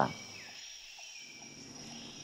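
A lull between speech, filled with faint steady background noise and a thin, high, steady hum.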